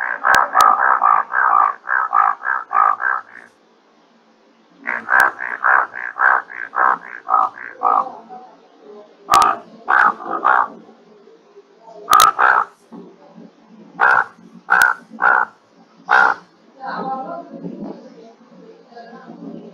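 Recorded advertisement calls of an Indian bullfrog: two long runs of rapid croaks, about three to four a second, then shorter, more widely spaced groups of croaks. A few sharp clicks are scattered through it.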